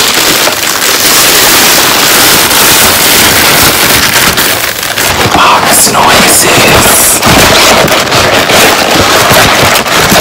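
Loud crinkling and rustling of a plastic takeout bag handled right at the microphone, with a cardboard food box being handled and opened later on.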